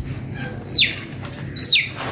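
A chicken peeping twice while held in the hand, two loud, short calls that fall in pitch.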